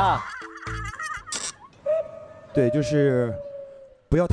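A man's voice asking a question, then laughter. Short steady tones and a long held tone that slowly falls run through the laughter, typical of a variety show's added sound effects.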